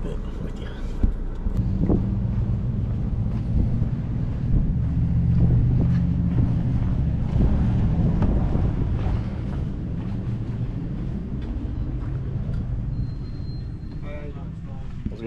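A motor vehicle engine running nearby as a steady low hum. It swells in the middle and fades toward the end, with a couple of knocks near the start.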